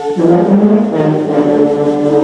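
Middle school concert band playing sustained chords, brass prominent, with the harmony moving to a new chord just after the start.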